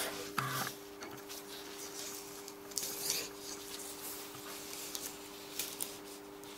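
Faint rustling and scraping of a plastic sheet and sticky tape being handled and cut free, in a few short scattered strokes, over a steady low hum.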